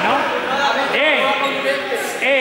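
Several young people's voices chattering in a large, echoing sports hall, with one raised rising-and-falling call about a second in.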